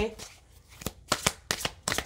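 A deck of tarot cards shuffled by hand: a quick run of short card clicks and slaps starting about a second in.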